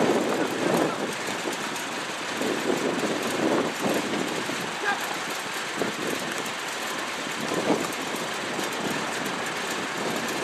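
Steady outdoor background noise, with brief, indistinct voices of players calling out on the training field a few times.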